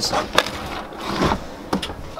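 A wooden cabinet drawer loaded with tools sliding shut, with a sharp knock about half a second in, a scraping run in the middle and a couple of small clicks near the end.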